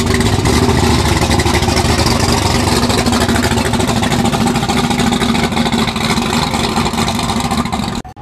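Twin-turbocharged 383 cubic inch V8 of a VH Holden Commodore drag car running loud and steady at low speed close by as the car rolls off.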